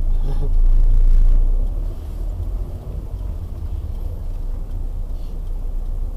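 Low, steady rumble of a car heard from inside the cabin, louder for the first two seconds and then even.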